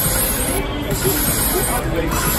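Casino floor din: a slot machine's bonus-round music and spin effects over background music and voices, steady throughout.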